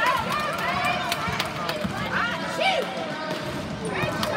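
A basketball dribbled on an indoor gym floor, with children's running footsteps, over the voices of spectators.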